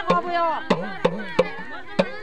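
A woman's voice singing a folk melody, accompanied by sharp strikes on a small hand drum roughly every half second.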